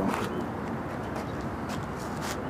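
Steady outdoor background noise with a few faint clicks, in a pause between speech.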